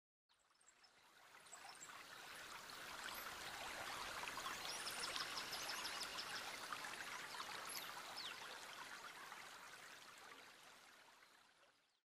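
Faint nature ambience of running water with small high chirps, fading in over the first couple of seconds and fading out near the end.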